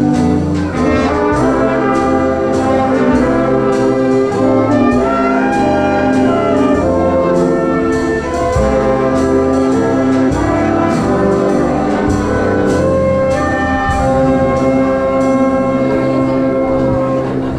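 Live jazz big band playing: trumpets, trombones and saxophones sounding chords together over a moving bass line and a steady drum beat.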